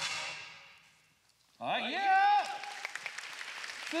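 Hip-hop dance track cuts off, its reverb dying away to near silence. About a second and a half in, a loud voice calls out in a rising-and-falling shout, with scattered claps after it. Another such call comes near the end.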